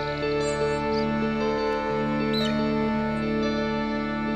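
Ambient background music of long, held tones, with a few short high chirps about half a second in and again about two and a half seconds in.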